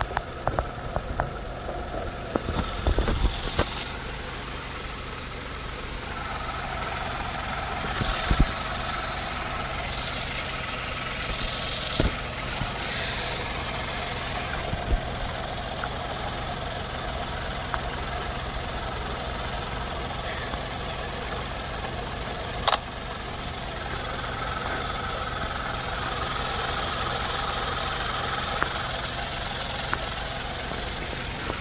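Kia Morning's Kappa DOHC gasoline engine idling steadily, heard with the hood open. Several sharp knocks in the first few seconds and a loud single click a little past the middle are handling noises under the hood.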